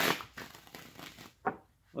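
A tarot deck being riffle-shuffled and bridged between the hands: a rapid papery riffle at the start that dies away, then one sharp snap of the cards about one and a half seconds in.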